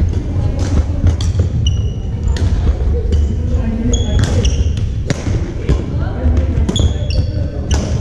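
Badminton rackets striking a shuttlecock during rallies: repeated sharp cracks ringing in a large echoing gym. Short high squeaks of sneakers on the hardwood floor come between the hits, under a steady low rumble and distant voices.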